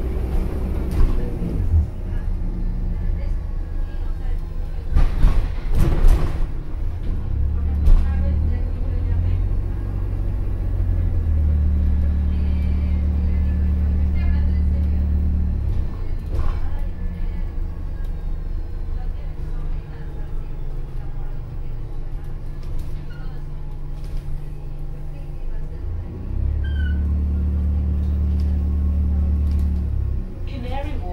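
Interior noise of an Alexander Dennis Enviro400H hybrid double-decker bus under way. A low drone swells and drops in long stretches, with faint whines rising and falling in pitch and a few rattles and knocks in the first several seconds.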